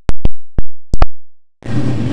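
Digital audio dropout: dead silence broken by five sharp clicks in the first second or so, the last two close together, typical of a glitch at an edit.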